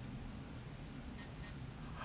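Two short, high electronic beeps about a quarter of a second apart, over faint room hiss.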